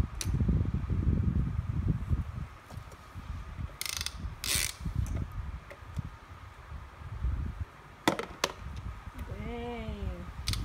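Wet Head game's spin timer clicking as it runs down, a fast ratcheting tick. Two sharp scraping bursts come about four seconds in, and two clicks just after eight seconds.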